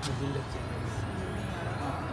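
A steady low rumble, with faint voices talking in the background.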